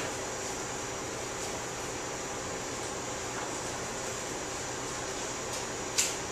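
Steady, even background hiss of room tone, with no distinct sounds standing out.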